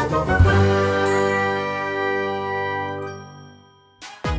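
Short musical intro jingle: a quick flurry of chiming notes in the first second, then a held chord that slowly fades out near the end.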